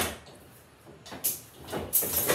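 Signal levers of a mechanical lever frame being put back to normal, returning signals to danger. A sharp metallic clunk comes at the start, then metal scraping and sliding in the second half that grows louder toward the end.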